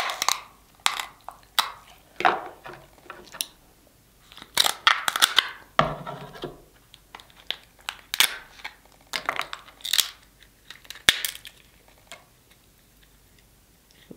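Boiled king crab leg shell being cracked and snapped apart by hand: a run of sharp crackles and snaps that thin out near the end.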